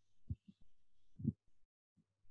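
Two faint low thuds about a second apart, with a few softer ones, over quiet low background noise.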